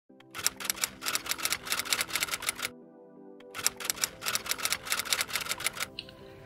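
Typewriter keystroke sound effect typing out a title in two quick runs of clicks, each about two seconds long, with a pause of about a second between them. A faint sustained music tone plays underneath.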